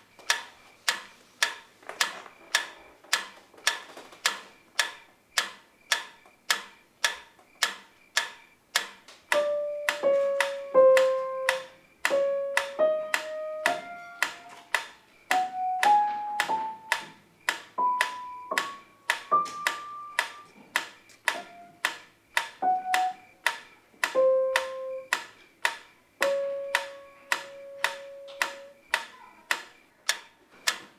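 Mechanical pyramid metronome ticking steadily, about two and a half ticks a second. About nine seconds in, an upright piano joins with a slow melody of single notes played in time with the ticks.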